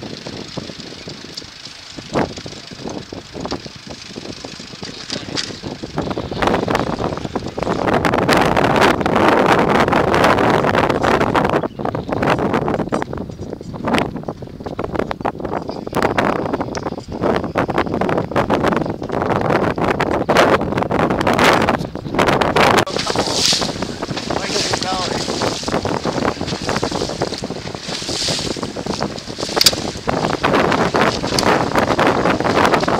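Gusty wind buffeting the microphone, growing louder about a quarter of the way through and staying strong.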